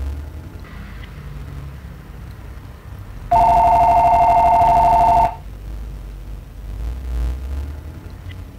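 A telephone rings once, a single ring about two seconds long: two steady tones trilling rapidly together, starting and cutting off suddenly. It comes about three seconds in, over a low background rumble.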